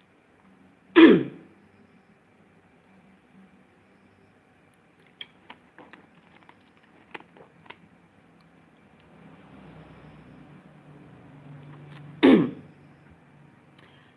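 A man clears his throat twice, once about a second in and again near the end, each a short loud rasp falling in pitch. In between come a few light clicks from a plastic water bottle being handled and capped.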